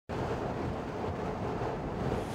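Steady background noise, even and featureless, with no distinct sounds standing out.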